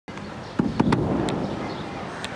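A few sharp clicks or cracks in quick succession, about half a second to a second in, over steady outdoor background noise.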